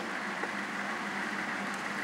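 Steady outdoor city-street background noise, an even hum of distant traffic with no distinct events.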